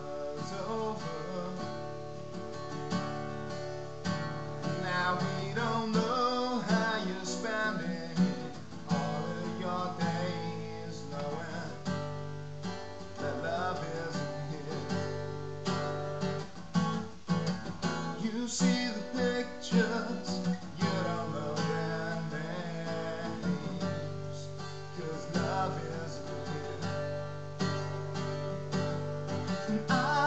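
Acoustic guitar strummed steadily, with a man's solo singing voice over it in places.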